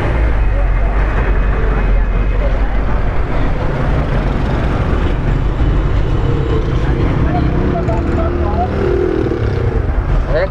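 Steady low rumble of motor-vehicle engines and traffic, with indistinct voices in the background.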